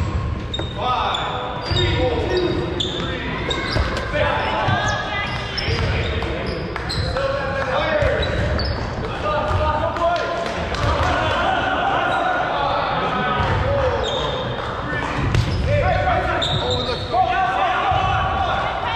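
Rubber dodgeballs bouncing and thudding on a hardwood gym floor, with players shouting and chattering throughout, all echoing in a large gymnasium.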